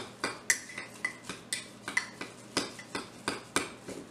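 Metal spoon stirring hot cereal in a microwave-safe bowl, clinking against the bowl about four times a second.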